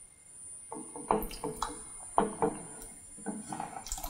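Sliced potatoes scraped off a wooden cutting board with a wooden spatula and dropping into a pot of thick, creamy soup. A series of irregular knocks and plops starts about a second in.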